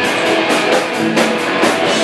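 Hardcore punk band playing live: distorted electric guitars and bass over a fast, steady drum beat with cymbal crashes, about three to four hits a second.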